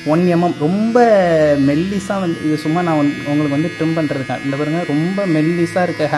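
A man talking almost without pause, over a faint steady electric buzz that fits a hair trimmer's motor running.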